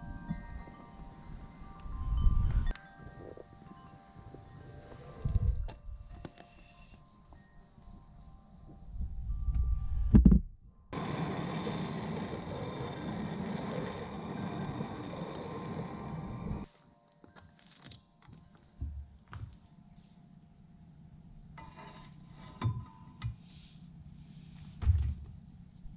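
Background music with ringing tones and a few thuds, then about halfway through a gas blowtorch hisses steadily for about six seconds and cuts off suddenly, followed by a few light knocks.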